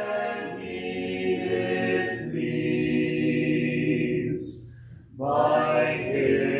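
Congregation singing a hymn unaccompanied in long held notes. The singing fades out briefly about four and a half seconds in, between lines, and the next line begins strongly about a second later.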